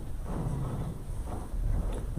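Shuffling and low bumps as several people sit down in their chairs, with a heavier thump near the end.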